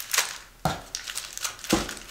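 Plastic candy wrappers crinkling and rustling as a pile of wrapped candy is handled, with a few sharp crackles.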